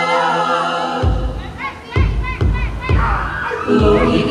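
A group of voices holds a sung chord, then about a second in heavy drum beats come in at an uneven pace, with the singing going on over them: live accompaniment to a Tongan group dance.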